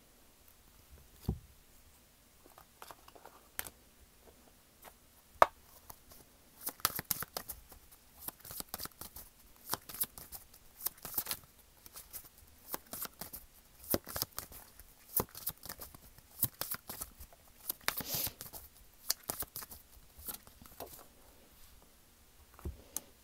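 Tarot cards being shuffled and handled: a few scattered card taps at first, then, from about six seconds in, a long run of quick, crisp card slaps and rustles.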